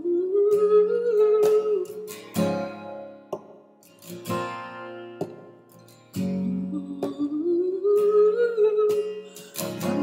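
Solo acoustic guitar strummed, with a man humming a wordless melody over it in two phrases, each rising and then settling.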